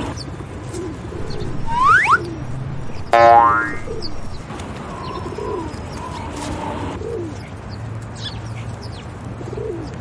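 Bird ambience of doves cooing and small birds chirping, with a cartoon sound effect of a quick rising whistle about two seconds in and a springy boing just after three seconds, the loudest sound.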